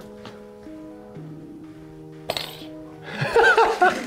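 Background music of steady held tones, with one sharp clink about two seconds in, like a small game piece being struck on a tabletop board. Near the end comes a short, loud wavering voice sound.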